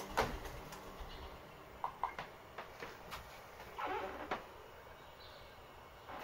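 Scattered soft clicks and small handling knocks from an Atari ST mouse being clicked and moved by hand, a few at a time, with a small cluster about four seconds in.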